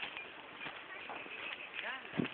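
Faint voices in the background with a few light clicks or taps, in quiet open-air ambience.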